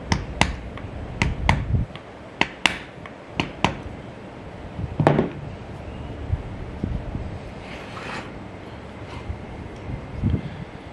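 A tool tapping a small oil-cup cap into place on an old electric motor's end bell: a quick series of sharp taps, about ten in the first four seconds, then a heavier knock about five seconds in. Light handling noise follows near the end.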